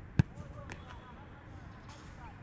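A football struck hard by a kicking foot, one sharp thump about a fifth of a second in, followed by two fainter knocks.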